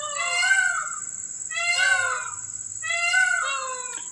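A cat meowing three times, each meow under a second long with a rising-then-falling pitch.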